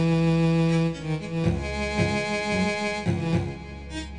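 Electronic synthesizer music: sustained low, string-like synth notes with a higher line above them, the notes changing about once a second and fading down near the end.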